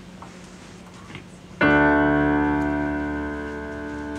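Keyboard playing a piano sound: a loud chord struck about one and a half seconds in, held and slowly fading. Before it there is only a faint hum and room noise.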